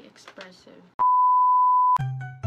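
A single steady, pure-toned beep lasting about a second, starting halfway through and cutting off sharply: an edited-in censor bleep over speech. Faint talking comes before it.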